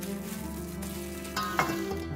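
A plastic-gloved hand tossing seasoned soybean sprouts in a stainless steel bowl: a crackly rustle of glove and sprouts, with a couple of louder scrapes near the end.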